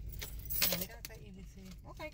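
A short jangling rattle about half a second in, over a low steady rumble in a car cabin, with quiet speech under it.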